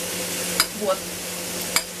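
Turkey sizzling steadily in a frying pan, with two short sharp clicks, about half a second in and near the end.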